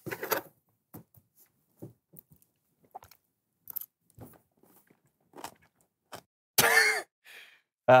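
Faint, scattered small clicks and mouth noises of a person taking a bite of pie and chewing, followed about six and a half seconds in by a short vocal reaction.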